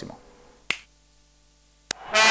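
Two short, sharp clicks about a second apart in an otherwise quiet pause.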